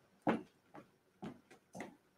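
Faint footsteps at a walking pace, a few short steps about half a second apart, as a person walks across a room.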